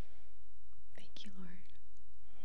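A woman whispering close to a handheld microphone: a soft breath at the start, then a few whispered words about a second in, one of them briefly voiced.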